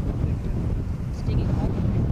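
Gusty wind buffeting the camcorder microphone, a rough low rumble that swells and dips: the chasers' inflow wind blowing toward the tornado.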